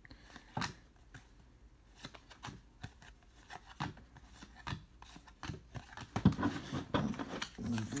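A stack of trading cards being flipped through by hand: a run of light clicks and rubs as card stock slides over card stock, busier near the end.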